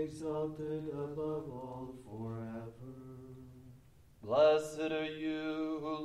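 Voices chanting a verse of a liturgical canticle on a simple psalm tone, held notes in a plainchant style. The line ends with a short pause about three and a half seconds in, and the chant resumes louder just after four seconds.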